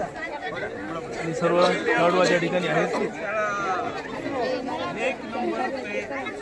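Several people talking at once: the chatter of a gathered crowd, with a low steady tone held for about a second partway through.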